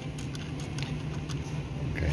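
A few small clicks and ticks of a mounting screw being turned out by hand from the back of a FuelTech FT dash display, over a steady low hum.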